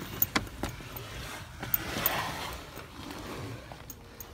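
A few sharp knocks and scuffs in the first second, then rustling of clothing and a backpack against stone and a phone camera, as someone scrambles out onto a rooftop.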